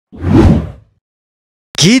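A whoosh transition sound effect that swells and dies away within about three-quarters of a second.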